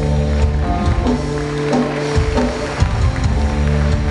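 Live worship music from a band on stage, played loud through the PA in a large hall: held chords and a bass line over a steady drum beat.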